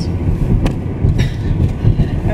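Steady low rumble of road and engine noise heard inside a moving car's cabin, with two light clicks in the middle.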